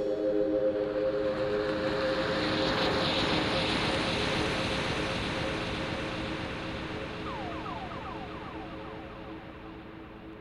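The fading tail of a downtempo electronic track: a held synth chord under a swelling wash of noise, dying away steadily. Near the end comes a quick run of short falling chirps.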